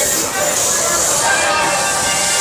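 Small steam train running, with a steady loud hiss and faint voices over it.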